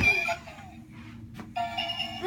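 Battery-powered toy bubble gun playing its electronic chiming tune while it blows bubbles, over a low motor hum. The tune breaks off about a third of a second in and starts again after a click about a second and a half in.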